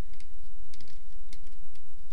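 Light plastic clicks and taps from a Halo 3 Mongoose toy ATV and a Spartan action figure being handled and fitted together: a few scattered clicks over a steady low hum.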